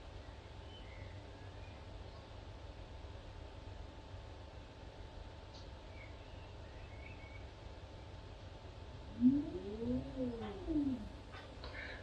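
Digital Bird pan-tilt head's motor driving a 3 kg camera rig through its tilt move: a faint low hum throughout, and about nine seconds in a whine that rises in pitch and falls back again over about a second and a half.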